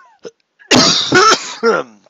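A man coughing, three loud coughs close together starting about two-thirds of a second in.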